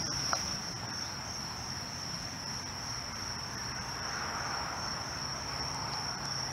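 Crickets calling in a steady, unbroken high-pitched chorus.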